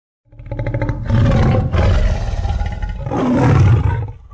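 A big-cat roar, matching the lion-head logo: a low, pulsing growl that builds into two long, loud roars.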